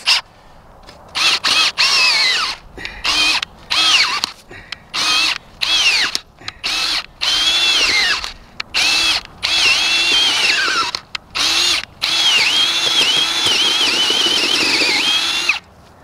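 Hart cordless drill turning a large earth auger into soil, its motor whine starting about a second in and running in many short stop-start bursts, the pitch dipping and recovering as the auger bites, with a longer run near the end. The drill cuts out under the heavy load, which the owner puts down to overload.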